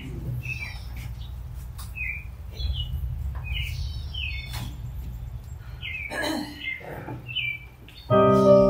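Small birds chirping: short, high, downward-sliding chirps repeating every second or so, over a steady low hum.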